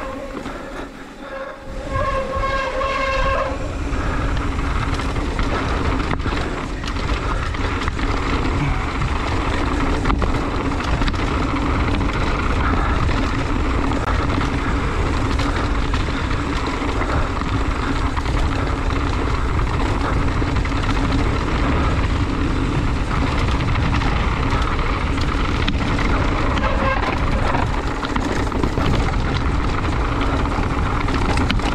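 Mountain bike riding down a dirt forest trail: steady loud rush of tyres on dirt and rock and wind on the mount-mounted microphone, with a brief high squeal about two seconds in.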